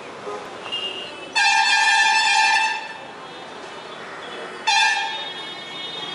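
A vehicle horn honking twice: one long, steady honk of about a second and a half, then a shorter honk near the end that tails off.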